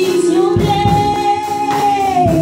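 A woman singing a gospel worship song into a microphone, holding one long high note from about half a second in, over sustained keyboard chords.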